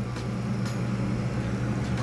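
Steady low hum with an even hiss from a running lampworking bench: the glassblowing torch flame and the shop ventilation.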